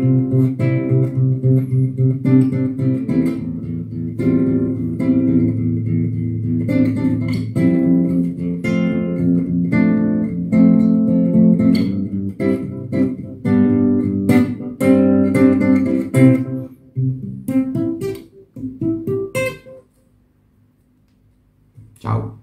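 Nylon-string classical guitar fingerpicked, arpeggiated chords over a steady bass line. About three-quarters of the way through it thins to a few last notes, which ring out and die away, leaving near quiet.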